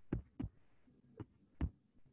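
Four short, soft knocks at uneven spacing, the first two close together and the last two near the middle and end, picked up by a computer microphone.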